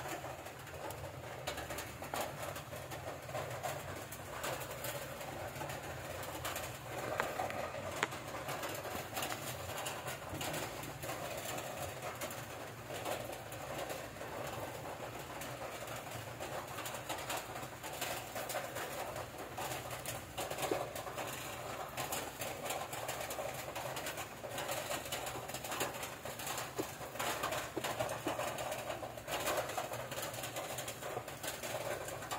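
Pigeons cooing in the background over steady room noise.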